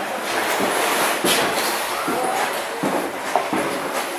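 Railway passenger coach running along the track, heard from inside the carriage: a steady rumble and rattle of wheels and bodywork.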